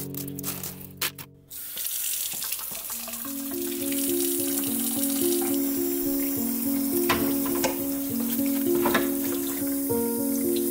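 Spray from a pull-down kitchen faucet hissing steadily into a sink as it rinses aquarium decorations, starting about a second and a half in. Background music plays with a simple stepped melody.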